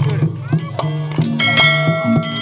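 Live jaranan gamelan music: a steady beat of drum strokes with struck metal gong-chimes. About a second and a half in, a bright ringing metal strike sustains over the beat.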